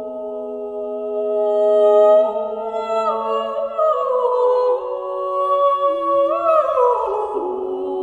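A small group of singers, women's and men's voices, singing early-music polyphony. They hold a full chord for the first few seconds, then the parts move downward in slow, overlapping lines.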